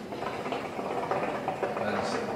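Hookah water bubbling steadily as a long draw is pulled through the hose.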